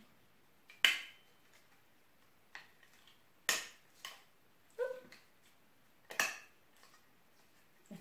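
Handheld stapler snapping shut several times as it is squeezed on folded filter paper. Three sharp clicks come about two and a half seconds apart, with fainter clicks between, as the stapler fails to cooperate.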